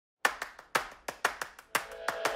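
Rhythmic clap percussion, a strong clap about every half second with softer claps between, opening a music track. Steady synth tones begin to come in near the end.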